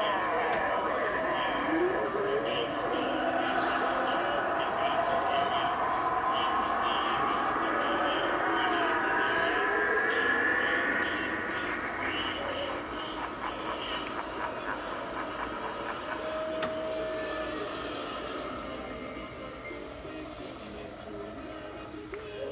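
Eerie soundtrack from a Halloween house display played over speakers: wavering, gliding tones that are loudest in the first half and then fade gradually after about eleven seconds.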